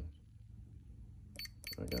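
Tenergy T180 balance charger giving a quick run of short, high beeps as its down-arrow key is tapped repeatedly with a stylus, starting about a second and a half in.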